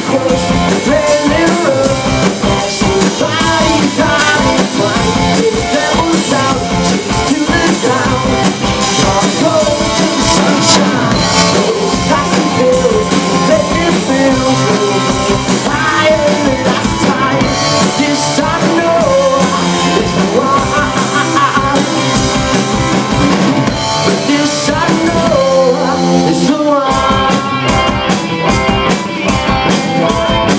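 Live rock band playing loudly, with electric guitar, bass guitar and drum kit. The drums and bass drop out for a moment near the end, then come back in.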